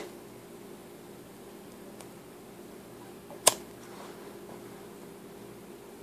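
Steady low electrical hum of a small room, like a fan or appliance, with one sharp click about halfway through and a fainter tick a little before it.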